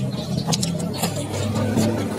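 Close-up chewing of a fried banana nugget, with scattered wet mouth clicks and crunches, over a steady low droning hum like a running engine.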